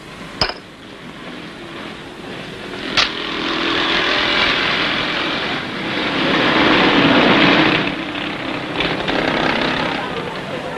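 A motor vehicle's engine passing in the street, growing louder to a peak about seven seconds in and then easing off. Two sharp clicks come earlier, one just after the start and one about three seconds in.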